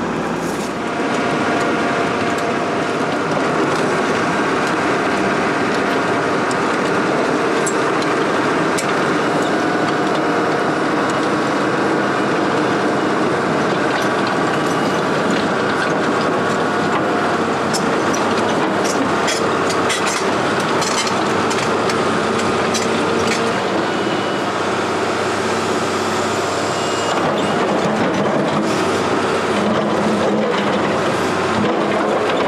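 Link-Belt LS-2800 tracked excavator's diesel engine running steadily under hydraulic load as the machine travels and works its bucket. Repeated metallic clanks and knocks from the steel tracks and from the bucket on broken rock come through the engine noise, most of them in the middle and near the end.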